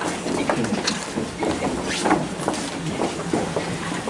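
Indistinct room noise from a gathered group of people: a steady hiss and rustle with no clear voice standing out.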